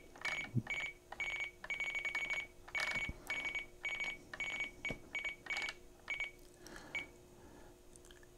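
FrSky Taranis radio transmitter beeping as its scroll wheel steps a setting value down, each step giving a short high beep. The beeps come in quick irregular runs and stop about seven seconds in.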